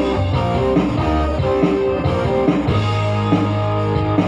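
Live band playing a Tagalog worship song in rehearsal: keyboard chords and low held bass notes over drums, at a steady level with no breaks.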